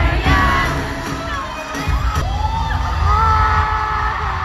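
Arena crowd screaming and cheering over loud live pop music with a heavy bass beat, picked up by a phone in the stands. The bass drops out briefly just under two seconds in, then returns.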